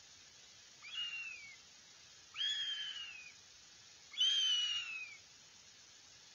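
Northern goshawk chick giving three drawn-out, wailing food-begging calls, each sliding downward in pitch and each louder than the one before.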